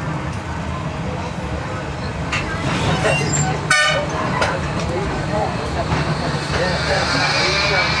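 Electric tram running with a steady low rumble under passenger chatter, with one short warning toot about halfway through.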